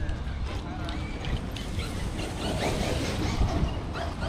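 Outdoor ambience: wind rumbling on the microphone, faint voices of people nearby, and a few light clicks and knocks.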